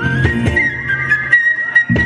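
Live band playing an instrumental passage: a flute carries a high melody over acoustic guitar, bass guitar and drums. Near the end the bass and drums drop away for about half a second, then come back in with a sharp drum hit.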